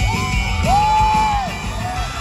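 Indie rock band playing live, with drums and bass under a high held note that rises, holds for nearly a second and falls away, heard from among the audience in a large hall.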